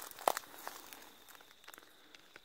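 Eucalyptus leaves and twigs rustling and crackling as a branch is handled, with one sharp crackle about a quarter-second in and a few lighter ticks after it.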